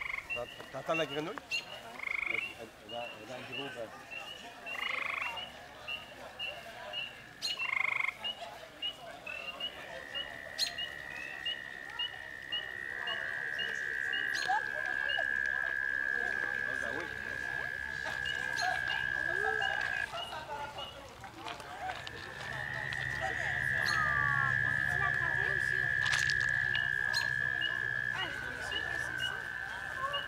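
Frogs calling: long, steady high-pitched trills, each held for about ten seconds, the first starting about ten seconds in and the next a couple of seconds after it stops, with a few shorter trills in the first eight seconds. Behind them a fainter chorus of rapid, evenly repeated high peeps.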